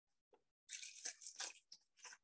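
Tissue paper rustling and crinkling as its layers are pulled apart and fluffed into a paper carnation. A dense rustle lasts about a second, starting just under a second in, followed by a few shorter crinkles.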